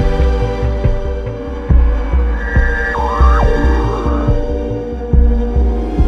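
Live electronic jam on hardware synthesizers and drum machine: a deep pulsing bass line with ticking percussion under steady held synth tones. About two seconds in, a higher synth line bends down and up in pitch before fading.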